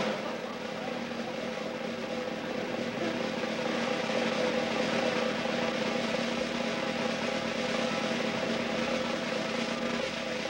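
Sustained drum roll from a studio band, steady and swelling slightly a few seconds in.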